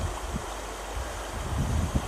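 Steady rushing noise of water pouring down the face of a concrete dam, with a low rumble of wind on the microphone.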